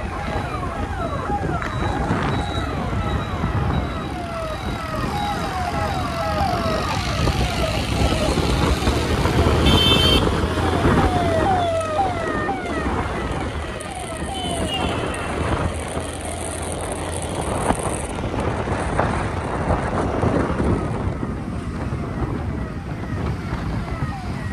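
Riding a two-wheeler through city traffic: steady engine, road and wind noise, with a person's voice running over it and a short horn about ten seconds in.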